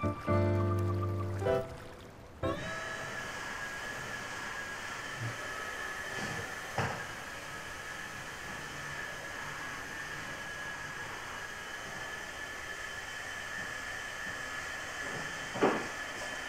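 Background music ends about two seconds in. A cordless stick vacuum then switches on and runs steadily with a constant high whine, with a couple of brief knocks along the way.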